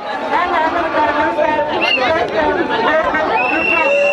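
A dense crowd of people talking and shouting over one another. A steady high-pitched tone comes in near the end.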